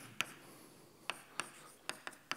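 Chalk writing on a blackboard: about five sharp chalk taps and short strokes against the board, one pair near the start and three more in the second half.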